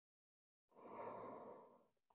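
A woman's single audible exhale, a soft sigh, starting about a second in and lasting under a second.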